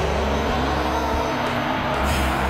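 Anime sound effects of a giant ape roaring over a continuous loud rumble of energy and crumbling rock.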